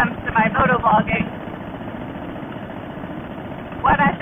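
Steady riding noise of a Harley-Davidson Fat Boy at highway speed: engine and wind on the helmet microphone. The rider's voice is heard for about the first second and again at the very end, too muffled to make out, in keeping with her own complaint that her audio is not good and that her voice does not project.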